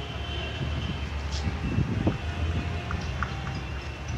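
Outdoor city street noise: a steady low engine rumble with a few faint clicks and knocks.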